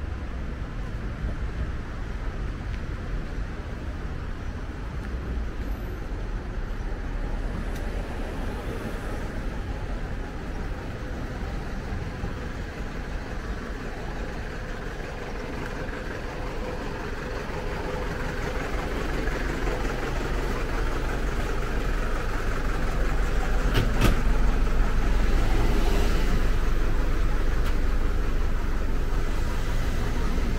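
Road traffic along a city street: a steady rumble that grows louder in the second half, with one sharp click near the end.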